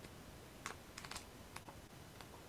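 Faint typing on a computer keyboard: a few light, irregular key clicks, most of them bunched about a second in.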